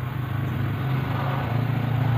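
An engine running steadily, a low even hum with no change in speed.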